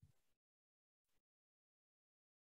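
Near silence: the video call's audio is cut to dead quiet, with only two very faint, brief sounds, one at the start and one about a second in.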